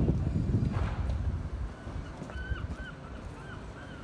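A gull calls a quick series of about five short, arched notes, starting about halfway in. A low rumble fades away under the first half.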